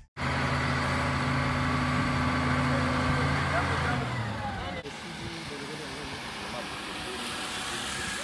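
Diesel engine of a ZL50GN wheel loader running steadily. About four seconds in it gives way to quieter outdoor background with scattered voices of people.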